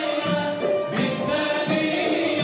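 Male voices singing an Islamic devotional song, a lead singer over a backing male choir, with a frame drum beating under them.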